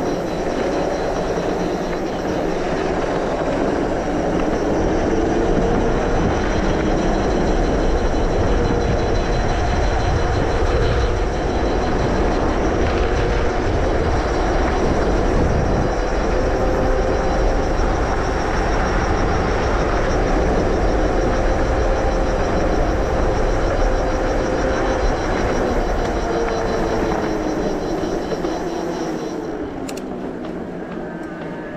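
Specialized Turbo Levo e-bike's mid-drive motor whining steadily under pedalling, mixed with tyre noise on asphalt and wind on the microphone; the whine falls in pitch near the end.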